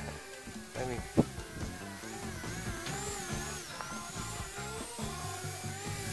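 Background music over the high whine of a small RC VTOL plane's twin 4000KV brushless outrunner motors and two-blade props. The whine wavers up and down in pitch as the throttle changes.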